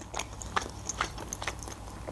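A person chewing a mouthful of homemade chicken shawarma with the mouth closed: soft, wet mouth clicks and squishes at an uneven pace, a few a second.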